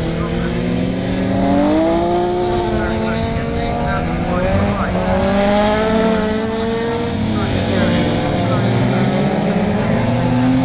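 Several touring-car racing engines running together as a pack passes through a wet corner. Their overlapping notes rise and fall as the drivers lift, brake and accelerate through the bend.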